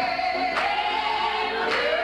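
Church choir singing a gospel song, voices held and wavering, with a sharp beat about once a second.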